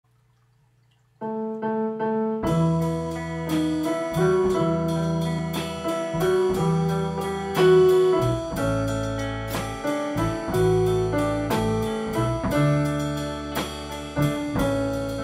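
Instrumental intro of a band's song. After about a second of silence a keyboard plays a few repeated chords, then bass, electric guitar and drum kit join about two seconds in with a steady beat.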